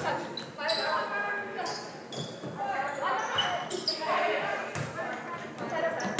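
Indoor volleyball rally in a gymnasium: several sharp smacks of hands and arms striking the ball, between voices calling out across the hall.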